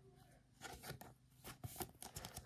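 Faint rustling and soft scraping of a glossy trading card being slid into a thin plastic card sleeve, a few small clicks and crinkles spread over the last second and a half.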